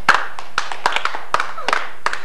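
Hands clapping: a run of quick, uneven claps.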